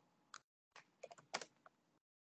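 Faint computer keyboard keystrokes, about half a dozen irregular clicks, heard through video-call audio that cuts in and out abruptly.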